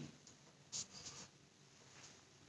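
Faint scratching of a marker on a whiteboard: a few short strokes about a second in, as a letter is written.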